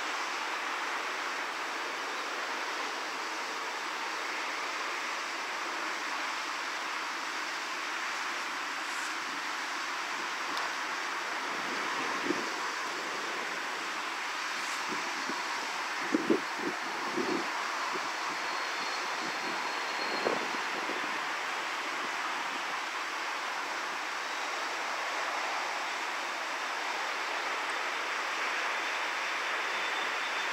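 Steady rushing outdoor background noise, with a few brief low thumps around the middle.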